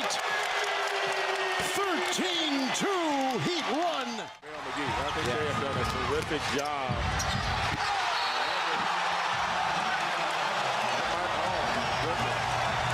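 Televised basketball game sound: arena crowd noise with a ball bouncing on the hardwood and sneakers squeaking as players move. The sound drops out briefly about four seconds in, then the same kind of court and crowd sound resumes.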